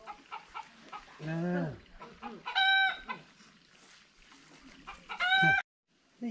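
Chickens calling: a short, high, clear call about two and a half seconds in, and another near the end that slides steeply down in pitch.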